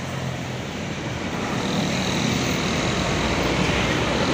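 Large intercity coach's diesel engine running as the bus passes close by, mixed with road and tyre noise. The sound grows louder over the first two seconds and then holds, with a faint high whine joining about halfway.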